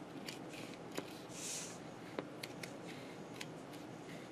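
Scissors snipping through a rubbery non-slip shelf liner: a run of short, sharp snips at an uneven pace, with a brief soft hiss about a second and a half in.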